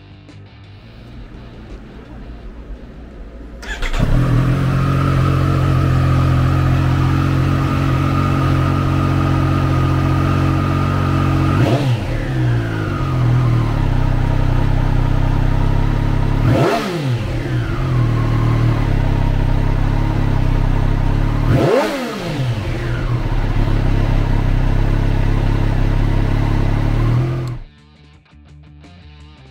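A 2020 Triumph Street Triple R Low's 765cc three-cylinder engine starts up about four seconds in and idles. It is revved three times with quick throttle blips about five seconds apart, each rising sharply and falling back to idle, then is shut off just before the end.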